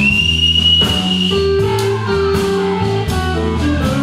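Blues band playing live on electric guitar, electric bass and drum kit. A long high note, rising slightly, is held over the first second and a half over moving bass notes and steady drum hits.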